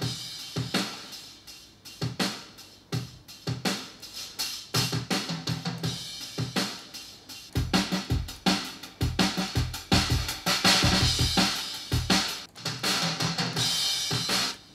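Pop-punk drum beat from a virtual acoustic drum kit playing back: kick, snare and cymbals, run through a parallel-processed drum bus boosted for a crunchy sound. About halfway through it gets fuller and louder, with heavier kick hits and a wash of cymbals.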